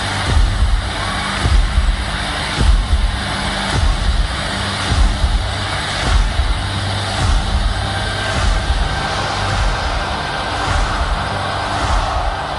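Deep low thumps, evenly spaced about every second and a quarter, from a large stadium's sound system, over the steady noise of a big crowd during the countdown.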